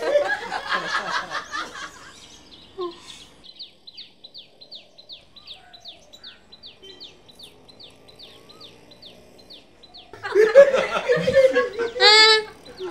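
Laughter dies away over the first couple of seconds. A small bird then repeats short, high chirps, each falling in pitch, about four a second for several seconds. Loud laughter returns near the end.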